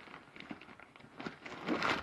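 Faint handling rustles, then near the end a louder crinkling of plastic bait packets as they are pulled out of a fabric tackle bag.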